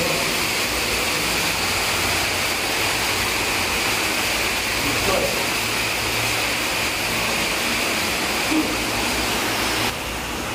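Steady rush of flowing water from an underground cave stream, with faint voices now and then.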